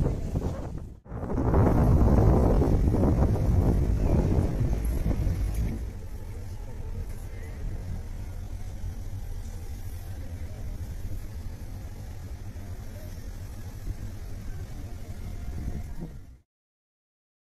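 Outdoor background noise on the camera's microphone, cut off suddenly about a second in. A loud low rumble follows for about five seconds, then a steadier, quieter background.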